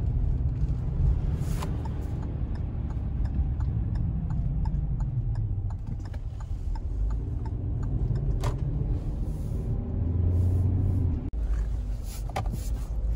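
Car cabin noise while driving: a steady low rumble of tyres and engine. Faint ticks run through it, with two louder knocks about a second and a half in and again near eight and a half seconds.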